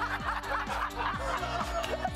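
A group of people laughing together over background music with a steady beat about twice a second.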